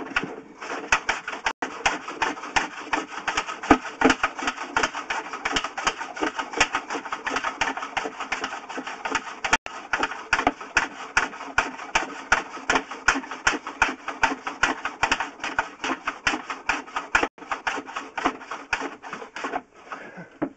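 Rapid, steady clicking and rattling, several clicks a second, from a sewer inspection camera rig as its push cable is fed down the pipe.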